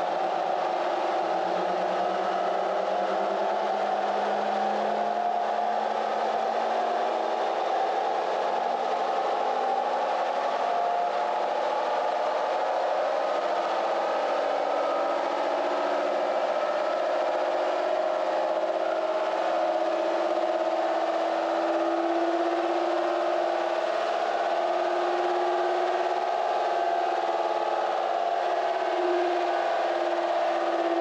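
Supercharged Toyota 5VZ-FE V6 pickup running on a chassis dyno, its tires spinning the rollers: a steady drone whose pitch climbs slowly as speed builds.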